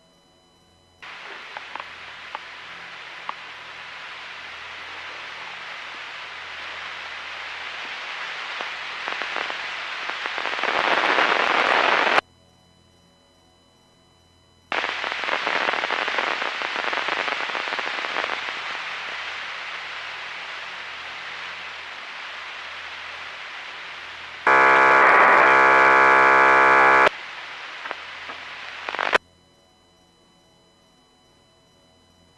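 Radio scanner audio: two long bursts of static hiss, each switching on and cutting off abruptly as the channel keys up and drops. Near the end a loud buzzing tone lasts about two and a half seconds.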